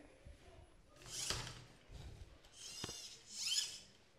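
Faint handling noises from a small competition robot: three short, high-pitched squeaky rustles and a sharp click as its parts are moved by hand.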